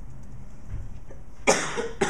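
A person coughing twice in quick succession, the first cough sudden and loud about one and a half seconds in, the second just as it ends; before that only faint room noise.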